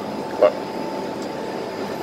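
Steady background noise of a hawker centre dining area, with a constant faint hum running under it.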